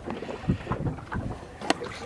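Wind buffeting the microphone over the noise of a boat running through the water, with one sharp knock near the end.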